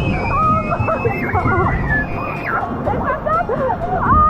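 Several riders shouting and whooping over the rush of churning water on a rapids boat ride, with one long high cry in the first two seconds.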